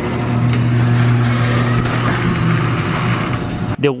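Electric garage door opener raising a sectional garage door: a steady motor hum over the noise of the door moving in its tracks, cutting off near the end.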